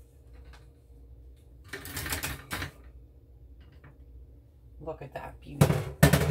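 Metal loaf pan rattling and scraping against a wire cooling rack as it is tipped and shaken about two seconds in, then a loud clatter near the end as the baked loaf comes out onto the rack and the pan is lifted off.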